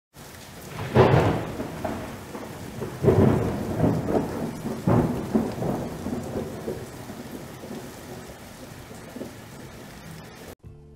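Intro sound effect: deep rumbling booms about one, three and five seconds in, over a steady hiss, the whole thing fading away toward the end.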